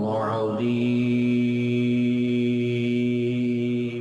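A man's voice chanting Quran recitation: a short moving phrase, then one long steady held note that drops away at the end.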